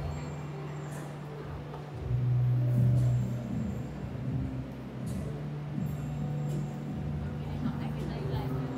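Indistinct voices in a large hall over a steady low hum, with a louder low drone about two seconds in that lasts about a second.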